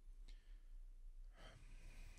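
Near silence: room tone with a steady low hum, and a faint breath drawn into the microphone in the second half.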